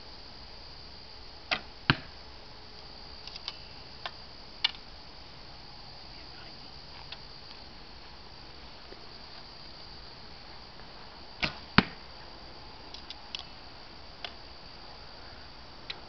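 Two shots from a bamboo reflex/deflex bow, each a pair of sharp snaps under half a second apart: the bowstring's release, then the arrow striking the target. The first shot comes about a second and a half in, the second and loudest about eleven seconds in, each followed by a few lighter clicks.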